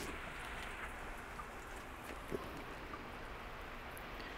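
Faint, steady rain-like hiss and patter of a low-pressure aeroponics system running: a submersible pump feeding PVC spray nozzles that spray nutrient solution onto the roots inside the closed bucket. A faint tap comes about two seconds in.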